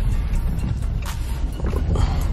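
Steady low rumble of road and engine noise inside a moving car's cabin, with a few faint ticks.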